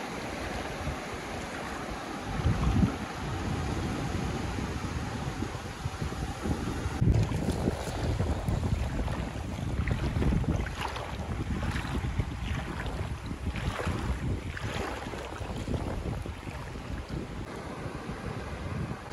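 Small sea waves washing and splashing in the shallows, with wind rumbling on the microphone in gusts, strongest about two and a half and seven seconds in.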